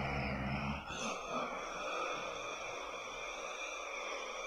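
A low, guttural growl from a woman acting as a possessed girl, lasting about a second, followed by a faint steady hiss.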